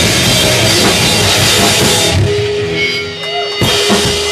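Hardcore punk band playing live on drum kit and distorted guitars. About halfway through, the full band and cymbals drop away, leaving a single sustained note, and the drums crash back in shortly before the end.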